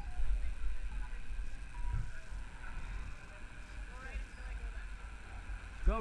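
Steady low rumble of wind and motion noise on a wearable action camera's microphone while riding down a snowy ski slope, with faint distant voices.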